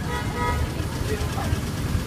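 A short horn toot: one steady note lasting about half a second, right at the start, over a low street rumble and faint background voices.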